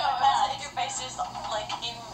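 Voices talking with music playing underneath, sounding thin with little bass.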